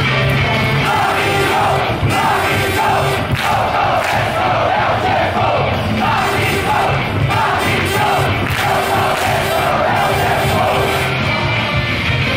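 Stadium cheer song over the ballpark loudspeakers, with a large crowd chanting along in rhythm.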